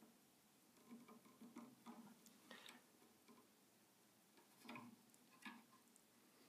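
Near silence with a few faint, scattered clicks and ticks: a plastic button being pressed by hand onto the metal shaft of a guitar tuner.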